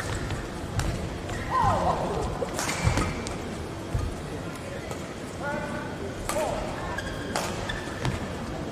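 Badminton rally: several sharp racket strikes on the shuttlecock, about a second or more apart, with brief squeaks of shoes on the court mat and a constant murmur of voices in the hall.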